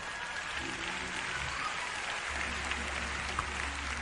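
Congregation applauding in a large hall, a steady wash of clapping. Low held musical notes sound faintly underneath, and a deep sustained tone comes in about halfway through.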